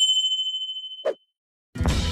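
Subscribe-button notification sound effect: a bright bell-like ding ringing out and fading, followed by a short soft pop about a second in. Music and a man's voice come in near the end.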